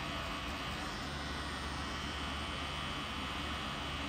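Steady hum of a pen-style rotary tattoo machine running continuously while its needle cartridge packs red ink into skin.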